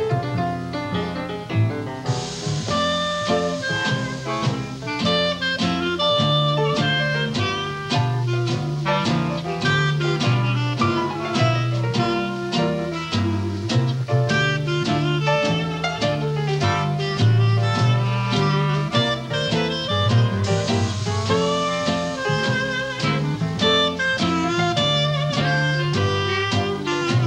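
Small traditional jazz band playing a medium-tempo swing tune: clarinet lines over piano, guitar, string bass and drums keeping a steady beat.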